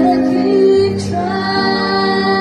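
A woman singing live into a microphone, backed by a band with violin, keyboard and bass guitar, holding long notes.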